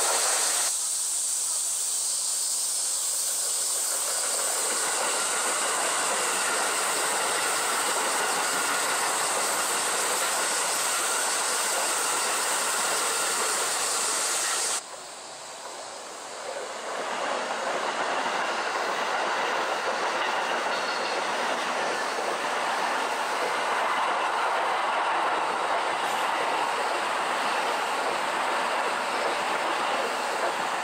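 Keikyu electric commuter trains running past close by on the line: steady rolling wheel-on-rail noise from one train with a steady high hiss, cutting off abruptly about halfway, then another long train approaching and passing.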